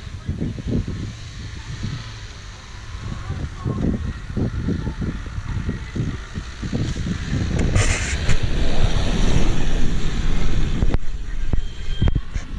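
Renault Duster's dCi diesel engine working hard as the 4x4 ploughs through soft sand, growing steadily louder as it comes closer.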